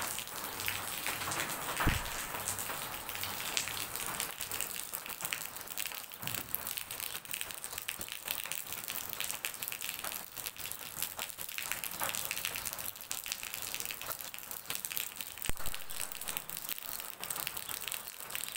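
Steady rain falling, a continuous pattering of drops on wet ground and surfaces, with a couple of brief knocks about two seconds in and again near the end.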